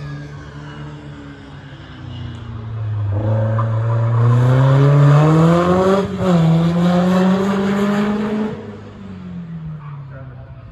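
A racing car's engine accelerating hard up the hill, its revs climbing steadily, with a short break for a gear change about six seconds in, then climbing again before fading away near the end.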